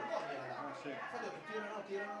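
Faint male voices talking quietly, with a short "sì" about a second in.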